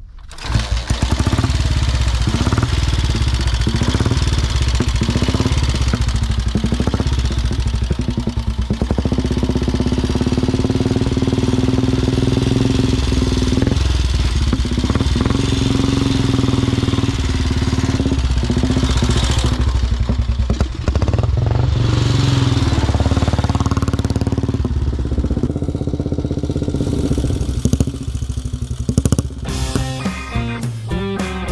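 The engine of a 1929 MT 500 OHV motorcycle with sidecar, a 20 hp English overhead-valve engine, catches about half a second in and runs loudly as the outfit rides along.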